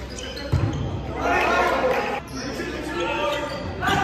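A volleyball struck hard once, a sharp thump about half a second in, followed by players and onlookers shouting, the sound echoing around a large sports hall.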